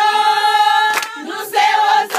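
Background music: a choir singing long held notes in harmony, with two sharp percussive hits, one at the start and one about a second in.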